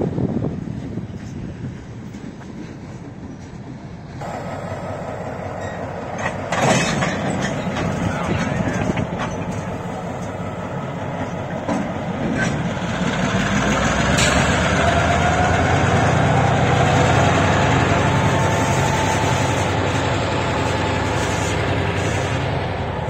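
Delmarva Central EMD MP15 diesel switcher locomotive running close by as it moves its freight cars, with a steady engine and wheel rumble and a sharp clank about seven seconds in. It grows louder in the second half, with faint wheel squeal over the rumble.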